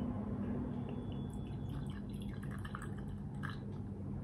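Rum poured from a small glass bottle into a glass tumbler: a faint trickle of liquid with a few small ticks.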